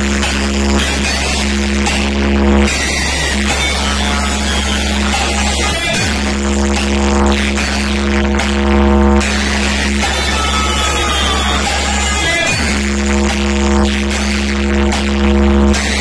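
Loud electronic music from a truck-mounted DJ sound system: a steady deep bass tone under held synth notes that break off and come back every few seconds, each return led by a quick falling sweep.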